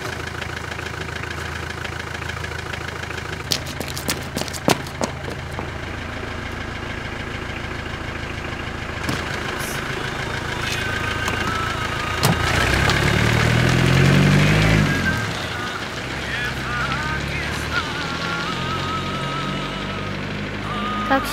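A car engine idling steadily, with a few sharp clicks and knocks about four to five seconds in, and the engine louder for a few seconds from about twelve seconds in.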